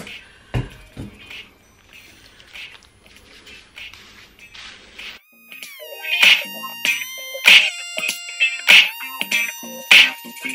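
A single thump about half a second in, then faint squishing and rustling of hands working shampoo lather through wet hair. About five seconds in, background music starts, with a stepping melody and bright hits about once a second.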